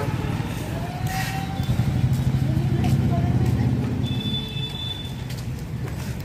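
Street traffic: a motor vehicle engine running close by with a steady low rumble, and a short high tone a little past the middle.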